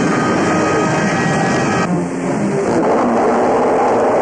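A loud, dense rumbling noise from a film soundtrack, changing abruptly about two seconds in.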